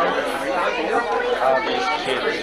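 Indistinct chatter of many people talking at once in a room.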